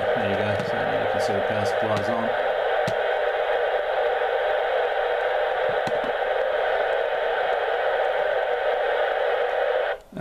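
Steady hiss of FM receiver noise from the speaker of a Yaesu FT-857D tuned to 145.525 MHz on 2 metres, cutting off suddenly near the end. The hiss is unchanged with the switch mode power supply running: on VHF the supply adds no audible interference.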